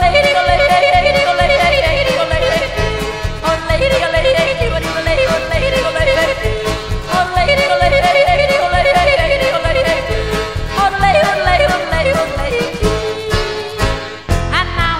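A woman yodelling, her voice flipping rapidly between low and high notes in about four phrases of roughly three seconds each. A country-style band with a steady beat accompanies her.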